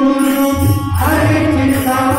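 Live Kannada devotional bhajan in raga Sarang: harmonium and chanted voices hold steady notes, with the tabla coming back in about half a second in.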